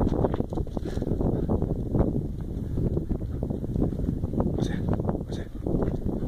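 Wind buffeting and handling noise on a phone microphone carried by someone running, a dense rumble broken by quick irregular knocks.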